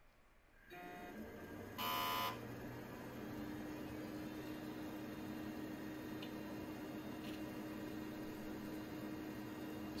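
Pentium PC powering on: fans and drives start whirring about a second in, and a short beep sounds about two seconds in. The machine then settles into a steady hum with a held tone, with a couple of faint ticks.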